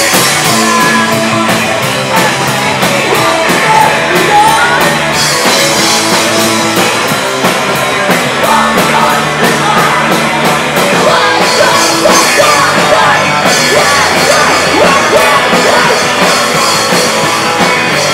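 Live electro-punk band playing loud: electric guitars and drum kit, with a singer's vocals over them.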